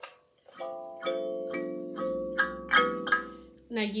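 Kalimba (thumb piano) being played: single notes plucked one after another on its metal tines, starting about half a second in, each ringing on and overlapping the next.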